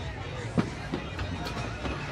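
Skee-ball being played: a ball rolled up the lane, with a few sharp knocks of wooden balls over the low steady din of the arcade stand. The first knock, about half a second in, is the loudest.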